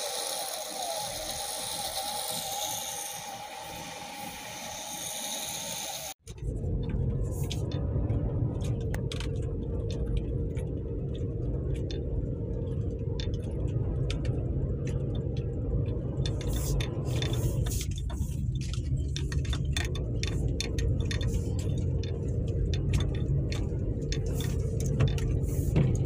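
Inside a 4x4 driving slowly along a snow-covered forest track: a steady low engine and tyre rumble with frequent small clicks and rattles from the cabin. It starts abruptly about six seconds in, after a quieter steady hum.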